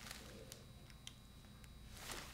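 Near silence: faint room tone with three faint clicks.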